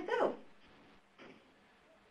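A woman's voice finishing a spoken word with a falling pitch, then a pause of near silence broken by one faint, brief sound about a second in.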